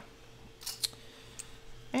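Small paper-covered notebooks handled and pressed together by hand: a few short, crisp paper rustles a little over half a second in, then a faint click.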